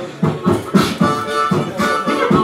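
Harmonica beatboxing: harmonica chords played in rhythm with vocal beatbox kicks and snares, making a steady hip-hop beat.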